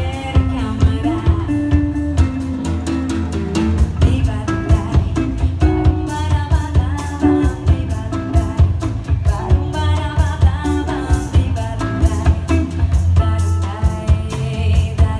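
Live band playing: a woman singing over electric guitar, electric bass and a drum kit keeping a steady beat.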